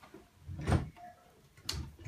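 Two knocks about a second apart, the first a dull bump and the second a sharper click.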